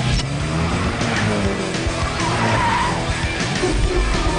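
Rock music with a car's tyres screeching about two seconds in, as in a car commercial's soundtrack.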